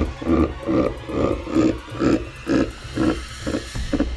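A man laughing, a long even run of 'ha' pulses about two a second.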